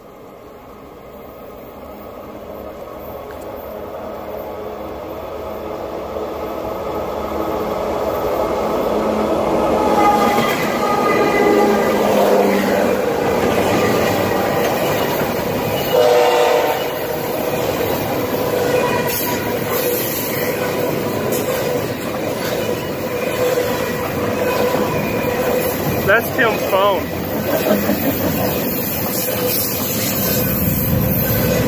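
A double-stack container freight train approaches and passes close by. It grows steadily louder over the first ten seconds as it arrives, then keeps up a loud, steady rumble and clatter of wheels on the rails as the well cars roll past.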